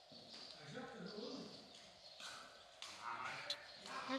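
Quiet, muffled voice sounds with light handling noise, and a single sharp click near the end.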